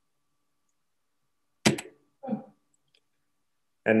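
Dead silence on a noise-gated call line, broken by one sharp click about one and a half seconds in and a brief, muffled short sound half a second later.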